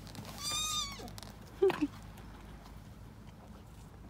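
A horse squeals once during a nose-to-nose greeting with another horse, a thin, high call under a second long, followed about a second later by a shorter, lower and louder sound.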